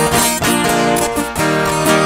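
Two acoustic guitars playing an instrumental passage of música caipira (Brazilian country music), with no singing.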